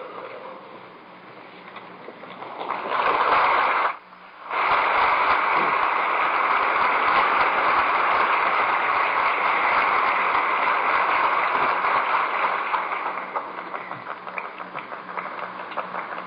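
Congregation applauding on an old tape recording. The clapping swells, breaks off briefly about four seconds in, runs steadily, then thins to scattered claps near the end.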